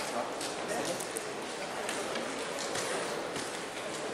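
Short strokes and taps of a marker pen on a whiteboard as a circuit diagram is drawn, over low, indistinct voices.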